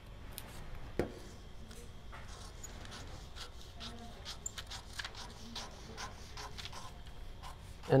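Scissors cutting through paper pattern pieces along drawn slash lines: a quiet, irregular series of small snips and paper rustles, with one sharper click about a second in.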